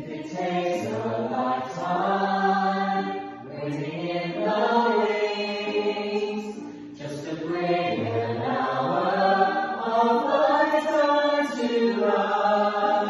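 A group of singers singing together in several voices, in phrases broken by short breaths about three and a half and seven seconds in.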